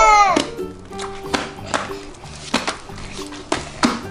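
Background music, with a child's drawn-out shout falling in pitch right at the start, then scattered sharp snaps and pops as a large pink slime is stretched and torn apart by hand.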